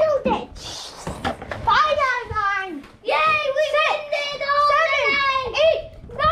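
A young child's high voice making wordless calls and play sounds, some drawn out and held steady for a second or more. A short rustle of handling comes about half a second in.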